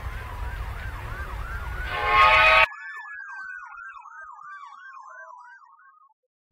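Emergency vehicle sirens wailing in fast rising-and-falling sweeps, about four a second, over a slower falling tone. A loud horn-like blast sounds for about half a second around two seconds in. Then the low background rumble cuts off suddenly, leaving the sirens fainter and fading out near the end.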